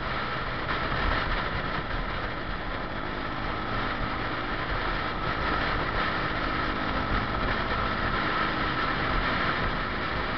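Motor scooter riding at steady speed: its engine running with the rush of wind and road noise, all at an even level throughout.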